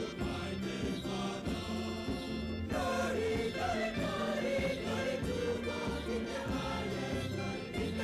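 A large choir singing together, accompanied by hand drums and clapping, with a steady beat; the voices grow a little louder about three seconds in.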